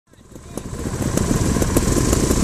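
Trials motorcycle engine running, fading in over the first second and then holding steady.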